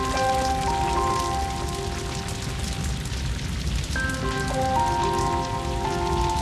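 Crackling and rumbling of a burning forest fire, with music of long held chords over it that change a few times.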